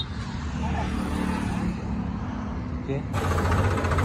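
Sonalika DI-35 tractor's diesel engine idling with a low, steady rumble beside a road, with a motorbike passing. About three seconds in, the sound cuts abruptly to the engine heard louder and closer.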